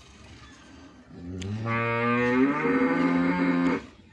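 A Murrah buffalo lowing: one long call of about two and a half seconds, starting a little after a second in, its pitch stepping up partway through before it cuts off.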